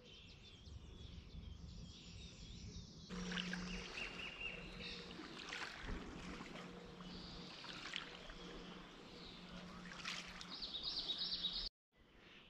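Faint bird chirps over quiet outdoor ambience, with a low steady hum underneath from about three seconds in.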